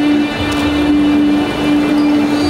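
A steady, loud droning note held with a couple of very brief breaks, part of the stage performance's backing soundtrack played over the sound system.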